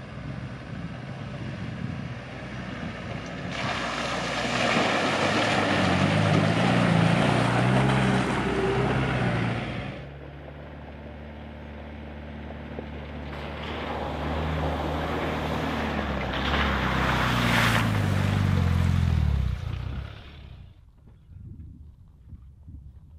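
Land Rover 4x4 driving past on a rough dirt track, twice: each time the engine note and tyre noise swell as it nears and the engine pitch drops away as it goes by. The first pass is loudest several seconds in, the second near the end, then it fades out.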